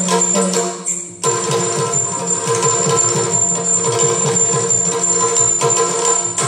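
Yakshagana ensemble music without singing: a steady held drone under fast drum strokes and jingling small cymbals. The drumming becomes dense and rapid about a second in.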